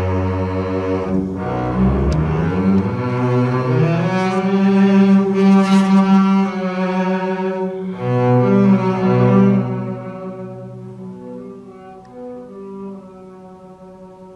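Unaccompanied double bass played with the bow in a contemporary classical piece: sustained notes rich in overtones, with a slide down into the low register about two seconds in. The playing stays loud until about ten seconds in, then turns soft and fades.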